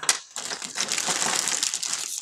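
A sharp click, then dense crinkling and rustling from about a third of a second in: a spinning top being handled and fetched out from among a collection of tops.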